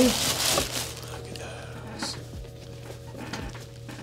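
Tissue paper rustling and crinkling as a boot is pulled out of a cardboard shoe box, loudest in the first moment and then fainter, over a faint steady hum.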